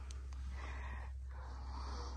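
A person breathing close to the microphone, two soft breaths, over the steady low hum of a heater running.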